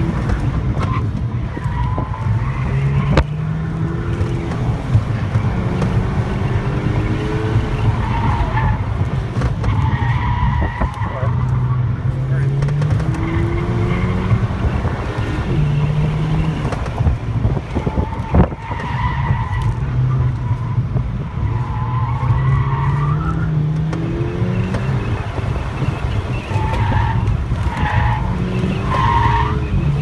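A car's engine, heard from inside the cabin, revving up and falling back again and again as it is driven hard through an autocross cone course, with the tyres squealing in short bursts through the corners.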